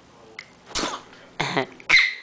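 Laughter from a baby and an adult in three short bursts, starting a little under a second in.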